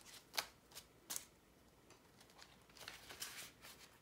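Faint handling sounds of paper bills and clear plastic cash envelopes in a binder as the pages are turned: a few light clicks in the first second and a half, then soft rustling about three seconds in.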